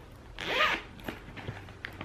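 A zipper on a clear plastic project bag is pulled open in one short stroke, followed by a few faint clicks of handling.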